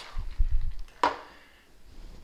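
A cocktail shaker handled after pouring and set down on a tabletop: low bumps, then one sharp knock about a second in.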